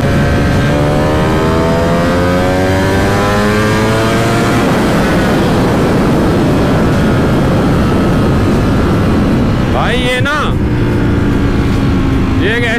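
Ducati Panigale V4S's V4 engine accelerating hard in second gear, its pitch rising for about four and a half seconds. The engine is then mostly covered by loud wind rush at high speed.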